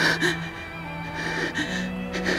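Soft dramatic background score of held low notes, with a sharp intake of breath right at the start and quiet breathing over the music.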